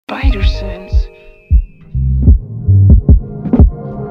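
Opening of a hip-hop instrumental beat: a short pitched sample in the first second, then deep kick drums with heavy bass and sharp drum hits from about a second and a half in, in a loose, swung rhythm.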